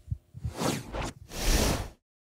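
Two whoosh transition sound effects, the second louder and longer, cutting off abruptly.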